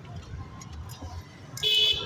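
A vehicle horn honks once, a short loud beep near the end, over a low steady rumble of background traffic.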